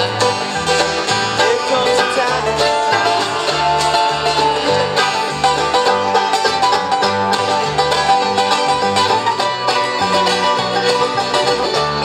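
Live acoustic bluegrass band playing an instrumental break, with the banjo out front over mandolin, acoustic guitar and a walking upright bass line.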